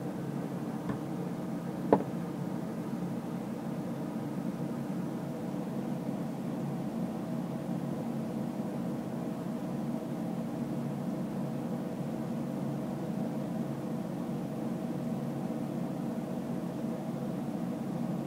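Steady background hum carrying several steady tones, with one sharp click about two seconds in.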